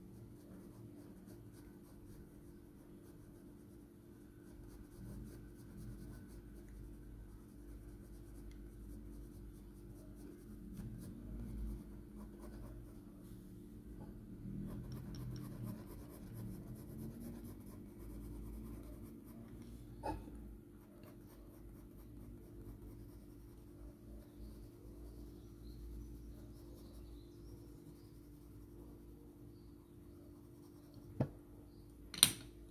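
Graphite pencil scratching lightly on paper in repeated short strokes as fur is drawn. It sounds faint and soft, over a low steady hum, with a single small click about two-thirds of the way through.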